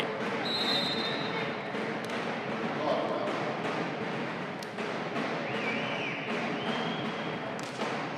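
A volleyball bounced a few times on the wooden court floor, each bounce a short knock over the steady hubbub of voices from the crowd in the sports hall. A short high whistle sounds about half a second in, and a longer high tone comes in the second half.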